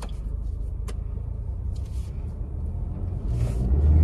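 Maruti Suzuki Baleno's 1.2-litre four-cylinder petrol engine heard from inside the cabin, running low and steady, then revving up from about three seconds in as the car pulls away. A single short click about a second in.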